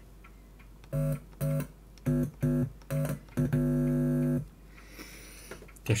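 Buzzing electrical hum from a powered cassette digitizer's circuit board, set off each time a screwdriver tip touches its chip: five short buzzes about half a second apart, then one held for about a second. It is the hum the owner traces to this chip.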